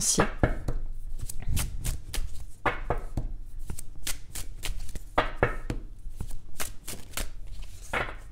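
A deck of Oracle Ombre et Lumière oracle cards shuffled by hand: a run of quick, irregular flicks and taps of cards against one another.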